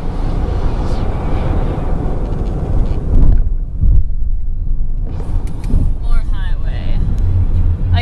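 Steady low road and engine rumble heard inside a car cabin at highway speed. It is briefly muffled in the middle.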